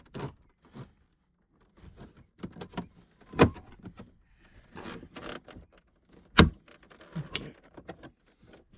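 Screwdriver and pick tool clicking, scraping and knocking against the hard plastic door trim panel of a Porsche Panamera as it is pried loose from the door. Two sharp knocks stand out among the scattered clicks, one about halfway in and one near the end.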